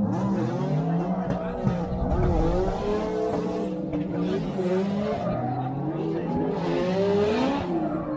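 Drift cars' engines revving hard, their pitch rising and falling continuously as the cars slide sideways, with the screech of spinning tyres underneath.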